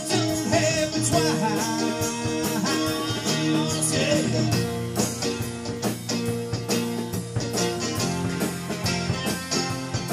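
Two guitars playing a blues instrumental break: an acoustic guitar strumming chords and a hollow-body electric guitar playing a lead line, with gliding notes in the first few seconds.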